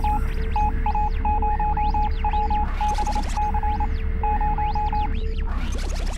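Synthesized computer-terminal sound design: rapid electronic beeps at one pitch in short runs, like text being printed on a screen, over a steady low drone and a deep rumble, with swooping electronic whistles that rise and fall.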